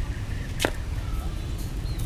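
A single sharp snap of a steel tape measure blade about a third of the way in, over a steady low rumble.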